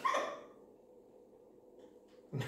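A pet parrot's single short squawk right at the start, dropping in pitch, followed by quiet room tone.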